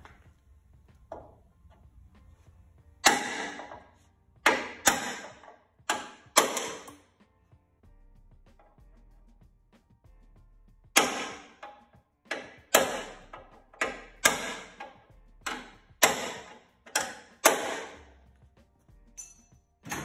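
A hammer striking a steel punch to drive old rivets out of a steel truck frame rail, each blow a sharp ringing metal clang. About six blows come a few seconds in, then a pause, then about a dozen more in quicker succession.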